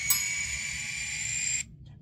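Locomotive bell played by a ScaleTrains N scale EMD SD40-series model's DCC sound decoder: one more strike rings out just after the start, then the ringing cuts off suddenly, as the bell is switched off.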